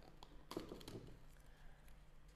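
Faint handling noises: a few light taps and rustles as a clear plastic orchid pot is picked up and held.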